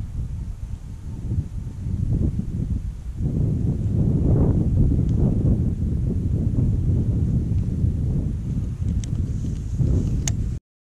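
Wind buffeting the microphone, an uneven low rumble that grows stronger about three seconds in, with a couple of faint clicks near the end.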